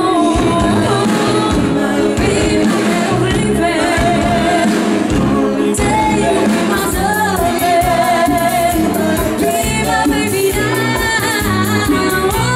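Live bachata band playing, with a steady pulsing beat under a female lead singer and a male vocalist singing through microphones.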